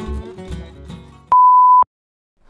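Acoustic guitar music fading out, then a single loud, steady electronic beep lasting about half a second that cuts off sharply.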